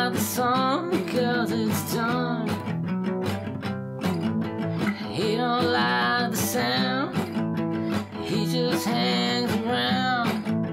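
A song with strummed acoustic guitar and a melody line that bends in pitch over it, in an instrumental stretch between sung lines.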